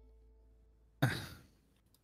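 A faint held tone fades away, then about a second in a person lets out a short, sharp sigh into a headset microphone: a disappointed reaction to a failed dice roll.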